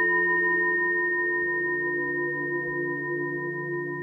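A struck meditation bowl ringing on after its strike, several steady tones layered together and slowly fading.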